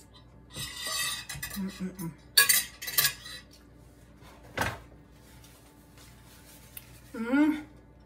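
Cutlery and dishes clinking and clattering as utensils are handled: a cluster of sharp clinks about two and a half to three seconds in, and a single knock about four and a half seconds in.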